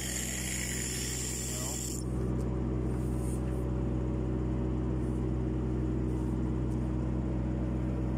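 An engine running steadily with a low, even hum. About two seconds in, a high hiss stops abruptly and the engine hum becomes louder.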